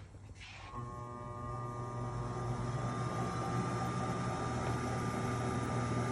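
Serdi 60 seat-and-guide machine's spindle motor starting about a second in and then running with a steady hum, turning a counterbore cutter that is not yet cutting into the valve guide.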